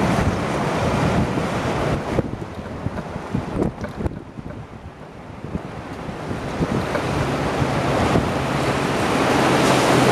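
Strong gusting wind and driving rain from a tornado-producing storm, buffeting the microphone. It eases for a moment about halfway through, then builds steadily louder to the end.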